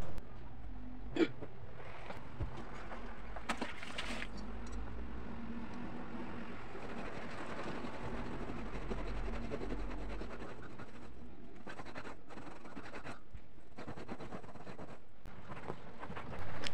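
Soft, steady rubbing of a fabric upholstery cushion being scrubbed by hand, with a few faint knocks.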